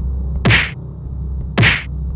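Two punch sound effects about a second apart, each a short hard whack, over a steady low hum.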